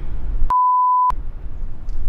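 A single steady high beep, about half a second long, starting about half a second in: a censor bleep over the interviewee's speech, with all other sound cut out while it plays. Low outdoor background noise surrounds it.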